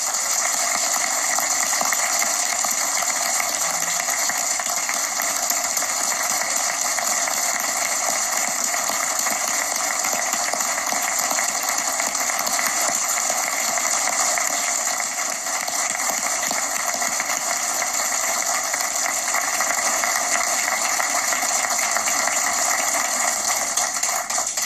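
A roomful of people applauding, a long, steady round of clapping.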